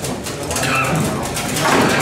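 Table football being played: repeated sharp clacks of the ball striking the players' figures and the table walls, with a denser flurry of hits near the end.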